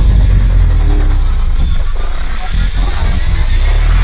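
Loud electronic cinematic sound design for a logo sting: a deep, heavy bass rumble held steady with a hiss over it.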